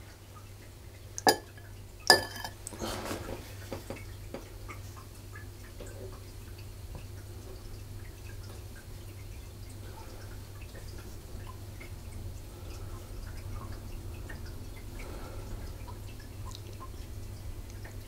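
Small metal spatula spreading and levelling soft marshmallow meringue in a silicone mould, with faint soft scraping. Two sharp clicks come near the start, about a second apart, as the spatula is picked up. A low steady hum lies underneath.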